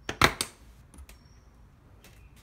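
Aluminium-trimmed cabinet door in a cargo trailer being opened: a quick clatter of latch and door knocks near the start, then one faint click about a second in.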